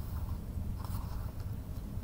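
A paper book page turned by hand, with a soft rustle of the paper about a second in, over a low steady hum.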